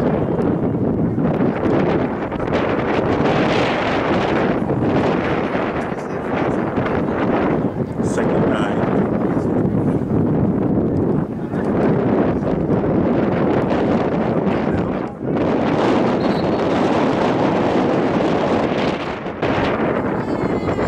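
Wind rushing over the camera microphone with indistinct voices mixed in, steady throughout with a brief dip about fifteen seconds in.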